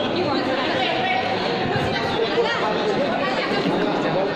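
Crowd chatter: many voices talking and calling out at once, overlapping so that no single speaker stands out.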